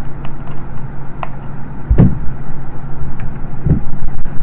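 Steady low electrical hum on the recording, with two dull low thumps, one about two seconds in and one near the end, and a few faint clicks.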